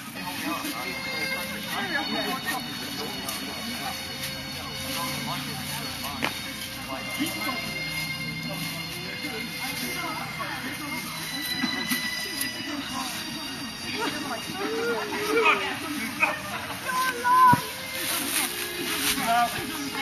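Several people talking and calling out over one another, with louder shouts about three-quarters of the way through. A faint steady tone runs underneath.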